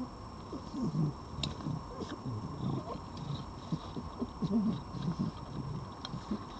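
Red foxes feeding at close range, with an irregular run of low grumbling sounds and a few sharp crunchy clicks as they jostle over the dry food, one low vocal sound standing out about four and a half seconds in.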